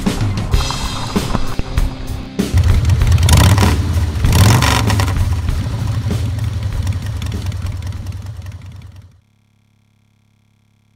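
Music, then from about two seconds in a motorcycle engine's low rumble that revs up twice, a second apart, before it all fades out shortly before the end.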